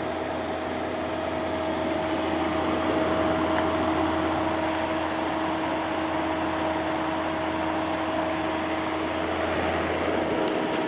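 General Electric AEC08LYL1 8000 BTU window air conditioner running steadily, a constant hum with a steady whine. Its fan motor turns on freshly replaced bearings and now sounds perfect, with none of the earlier bearing noise.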